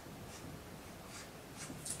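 Dry-erase marker drawing on a whiteboard: several short, faint strokes.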